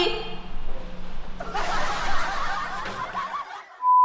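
Snickering laughter over a rushing noise that starts about a second and a half in. Just before the end a steady beep tone begins.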